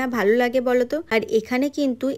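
A woman talking without a break, in narration.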